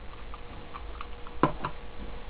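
Button clicks: a few faint ticks, then two sharper clicks close together about a second and a half in, over a faint steady hum.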